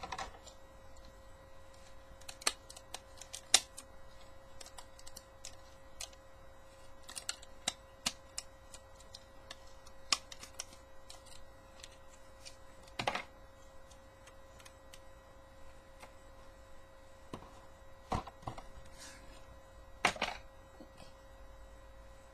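Plastic Transformers Animated Skywarp jet toy being handled and turned over: scattered light clicks and taps of its plastic parts, with a few louder knocks, over a faint steady hum.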